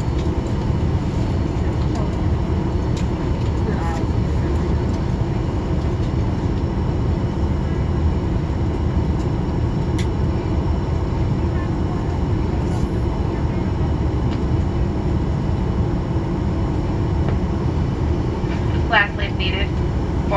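Steady low rumble in the cabin of a Boeing 737-800 on the ground, an even engine and air-system noise with no change in pitch or level; a PA voice starts about a second before the end.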